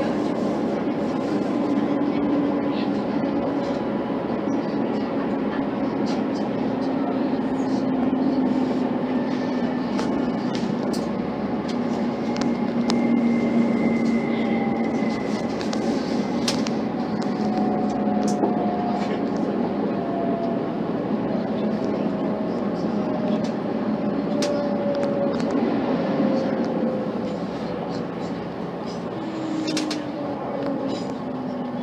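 Inside a Class 185 diesel multiple unit under way: a steady rumble of wheels on the rails and the underfloor diesel, with drawn-out whining tones that sink slowly in pitch as the train slows on its approach to a station.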